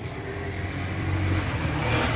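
Steady low drone of an idling engine, with a soft swell of hiss near the end.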